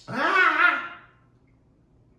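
A man's wordless vocal exclamation just after a sip from a cup, about a second long, swooping sharply up in pitch and then sliding gently back down.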